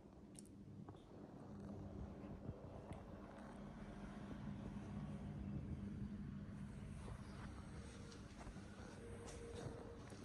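Quiet room tone: a low steady hum with faint rustling and a few light clicks, swelling slightly in the middle.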